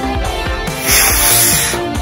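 Estes B6-4 black-powder model rocket motor igniting and burning with a loud hiss. The hiss starts just under a second in and lasts about a second, over background music.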